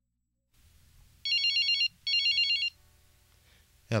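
Electronic telephone ringtone: two short trilling rings, each about two-thirds of a second long, starting a little over a second in.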